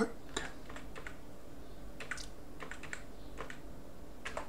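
Typing on a computer keyboard: irregular keystroke clicks, some in quick runs of several keys, as a terminal command is entered.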